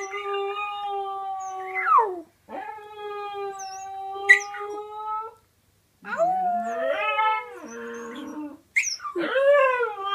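Young husky-type dog howling in a run of long howls: the first two held on a steady pitch, then after a short pause a wavering howl that falls, and a new one rising near the end.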